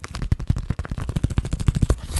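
Clear plastic bag crinkled close to the microphone: a dense run of rapid, sharp crackles.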